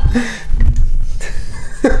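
Handling noise from a camera being grabbed and moved close up: heavy rumbling and bumps, with a few short bits of laughter.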